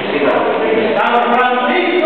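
A group of men and women singing together as an informal choir, holding longer notes from about a second in.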